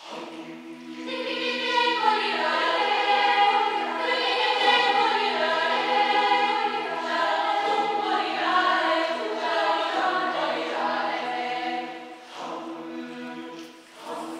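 Mixed choir singing unaccompanied: a low held drone in the lower voices starts at once, and the upper voices enter about a second later with a moving, interweaving melody. The upper voices thin out about two seconds before the end, leaving the drone.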